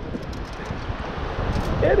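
Wind buffeting the microphone, with a few faint, short clicks as pebbles and debris are picked through in a perforated stainless steel sand scoop.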